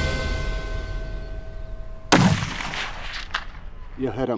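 Held notes of background music, cut through about two seconds in by a single loud hunting-rifle shot that echoes away, with a fainter crack about a second later.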